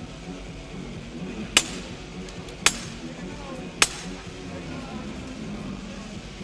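Three sharp knocks about a second apart over a steady arena murmur: the timekeeper's ten-second warning knocks near the end of the rest between boxing rounds.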